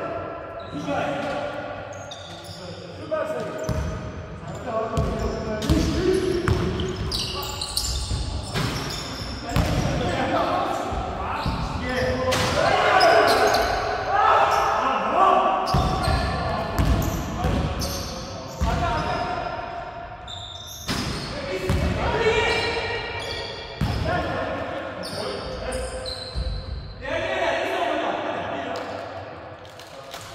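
A basketball bouncing repeatedly on a hardwood gym floor during a game, with players' voices calling out, all echoing in a large sports hall.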